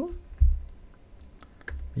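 A few scattered computer keyboard keystrokes and clicks, with a low thump about half a second in.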